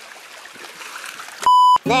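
Faint wash of seawater against the breakwater rocks, then about a second and a half in a short, loud electronic beep, one steady high tone lasting about a third of a second.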